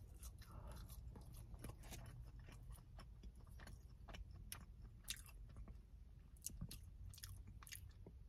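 Faint chewing of seasoned french fries with mouth clicks, over a steady low hum.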